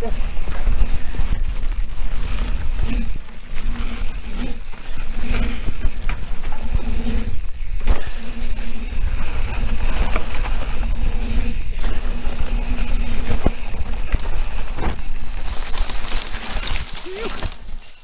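Mountain bike descending a dry, dusty dirt trail at speed: heavy wind rumble on the helmet microphone, tyres crunching over dirt and the bike rattling over bumps. Near the end a loud hissing scrape as the bike slides out and goes down into dry grass, and the noise cuts off suddenly as it comes to rest.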